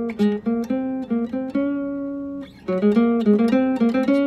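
Classical guitar playing a run of single plucked notes up the D string in groups of three. A longer held note falls about halfway through, then a brief break, then the run starts again.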